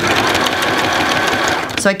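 Electric sewing machine running a straight stitch through fur and lining in one steady burst of rapid needle strokes. It starts suddenly and stops after nearly two seconds.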